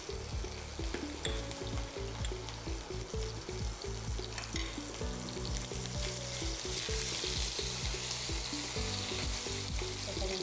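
Cumin seeds, curry leaves and chopped green chillies sizzling in hot oil in a frying pan as a tadka tempering. The sizzle grows louder in the second half, over background music.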